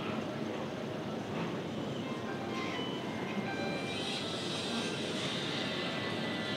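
Steady room noise with faint, indistinct voices in the background; a higher hiss joins about four seconds in.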